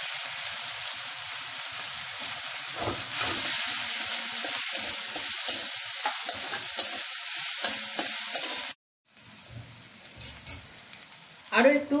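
Green chilli, ginger and garlic paste sizzling in hot oil in an aluminium wok while a metal spatula stirs it, with light scrapes and taps of the spatula on the pan. The sizzle grows louder about three seconds in, cuts off abruptly about three-quarters of the way through, then returns much quieter.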